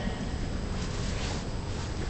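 Steady background noise of a large, crowded arena hall, with a faint smear of sound about a second in.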